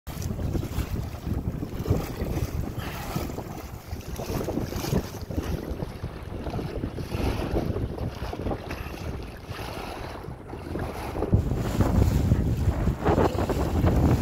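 Choppy waves slapping and splashing against a plastic pedal kayak's hull and washing over the deck, with wind buffeting the microphone. The splashing grows louder about eleven seconds in.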